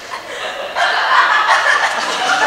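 Theatre audience laughing, growing louder about a second in.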